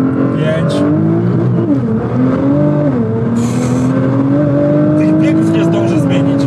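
Nissan GT-R's twin-turbo V6 under hard acceleration, heard from inside the cabin. Its pitch climbs steadily, with two short drops around two and three seconds in as it changes up through the gears. A brief hiss comes about three and a half seconds in.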